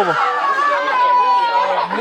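Several people talking and calling out over one another, with one voice holding a drawn-out call in the second half.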